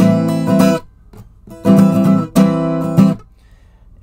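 Acoustic guitar strumming an A minor 9 chord in short rhythmic bursts, stopping a little after three seconds in.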